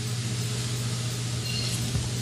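A steady low hum with an even background hiss, unchanging throughout, from a running machine or fan.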